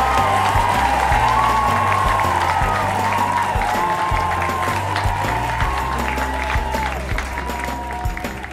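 Applause over closing music with a bass line and a held melody, starting to fade out near the end.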